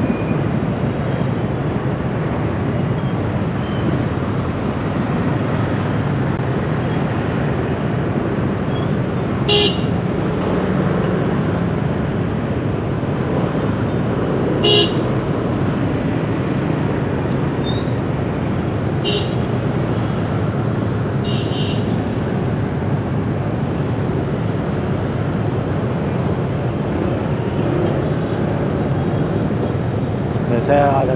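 Dense motorbike and car traffic in slow congestion, heard from a moving motorbike: a steady drone of engines and road noise. Short horn toots sound four times, about a third of the way in, around the middle, and twice more a little later.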